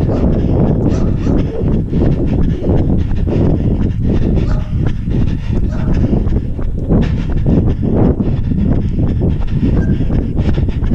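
Wind rumbling over a body-worn action camera's microphone while running on pavement, with the runner's repeated footfalls and hard breathing.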